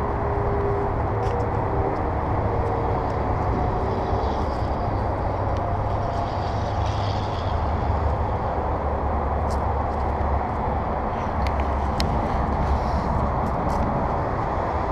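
Steady outdoor rumble of distant road traffic, mixed with wind buffeting the microphone.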